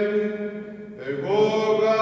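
Greek Orthodox priest chanting a liturgical reading in Byzantine style. A long held note fades out into the church's echo, and about halfway through a new phrase begins on a steady pitch.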